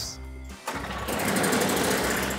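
Toro Power Clear snowblower engine starting suddenly about half a second in and then running steadily. The engine catches on a single pull, with its fuel treated with Seafoam.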